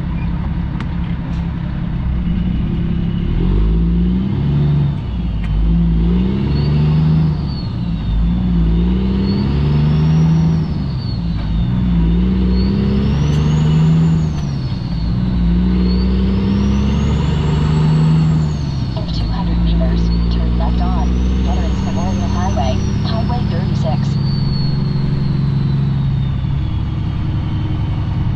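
Cummins ISX diesel of a 2008 Kenworth W900L pulling away and accelerating through the gears: the engine note climbs and drops back at each of about six upshifts, with a high whine rising and falling along with it. Heard from inside the cab.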